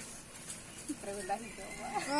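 A woman giggling briefly with short, wavering wordless vocal sounds, starting about a second in after a quieter moment.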